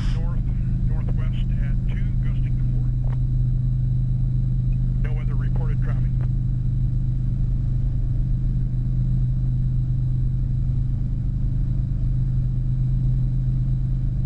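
Piston-engine training helicopter's engine and rotor drone, heard inside the cockpit: a loud, steady low hum that holds level, with the engine pulled to maximum power for a maximum performance takeoff.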